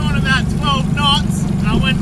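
Yamaha 40 hp outboard motor running steadily, a low even drone under the boat, with people talking and laughing over it.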